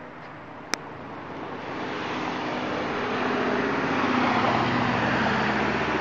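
Street traffic: a car's engine and tyre noise growing louder over the first few seconds and then holding steady. A single sharp click comes just under a second in.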